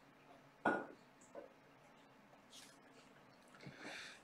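A quiet room with one short knock or clink about two-thirds of a second in and a fainter one shortly after.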